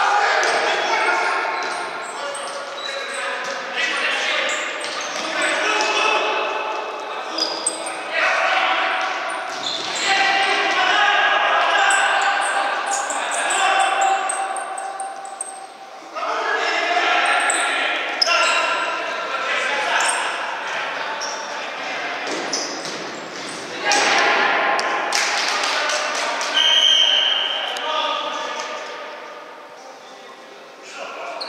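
Futsal players' voices calling out across a reverberant indoor sports hall, with the occasional sharp thud of the ball being kicked or bouncing on the wooden floor.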